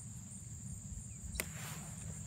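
Insects trilling in a steady, high, even drone over a low rumble on the microphone, with one sharp snap about one and a half seconds in as a small green pepper is plucked from its plant.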